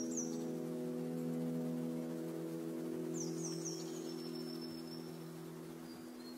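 A held low chord of ambient background music slowly fading out, with a few quick falling bird chirps near the start and again about three seconds in.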